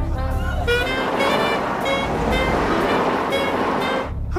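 Background music with the noise of a car driving through city traffic.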